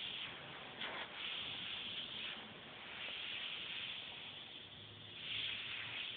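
Airbrush spraying paint at about 35 to 40 psi: a continuous air hiss that swells and eases as the trigger is worked to lay down pinstripe lines.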